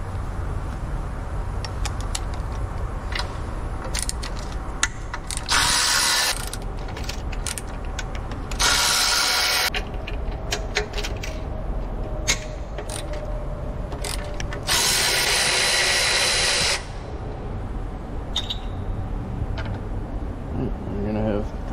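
Milwaukee cordless ratchet running in three bursts, two of about a second and one of about two seconds, spinning a socket on bolts around the engine's EGR cooler. Small clicks of tools and parts being handled fall between the bursts.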